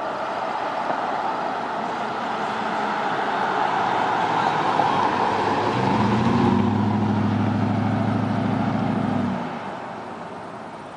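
Pickup truck driving past on a paved road: tyre and road noise builds as it approaches, and its engine and exhaust note comes through strongly as it passes about six seconds in. The engine note cuts off abruptly about nine seconds in and the sound falls away as the truck moves off.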